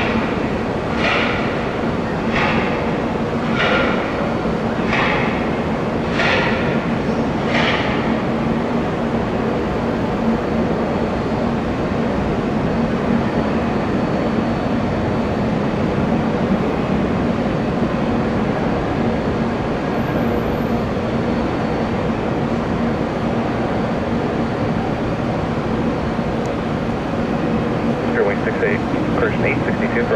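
Airbus A320neo jet engines at takeoff power, a loud steady roar with a constant low hum, as the airliner makes its takeoff roll and climbs out. Six evenly spaced short hissing sounds come over the first eight seconds.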